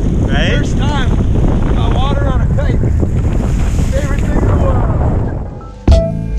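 Heavy wind buffeting an action camera's microphone while riding a kitefoil over the sea, with water rushing beneath and indistinct voices over the wind. The wind dies away about five seconds in, and a sudden loud hit comes near the end as music begins.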